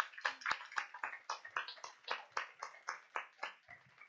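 Applause from a small audience in a small room: many hands clapping irregularly, thinning out near the end.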